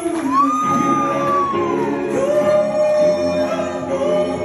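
Live soul band with a male falsetto lead voice. It holds a long high note that slides down near the two-second mark, then a lower held note, over keyboards and backing vocals.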